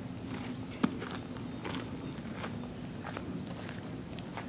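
Footsteps on gravel, an uneven series of crunching steps, with one sharper knock a little under a second in.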